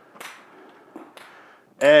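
Ping-pong ball bouncing on a hard floor: one sharp click a moment in, then two fainter clicks about a second in.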